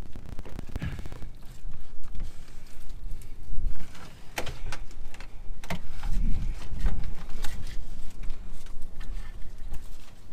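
Scattered clicks and knocks of hands fitting a boat's starter battery and its terminal clamps, over a low, uneven rumble.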